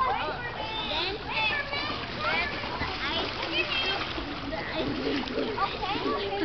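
Swimmers splashing in a pool, under the high-pitched shouts and chatter of several children throughout.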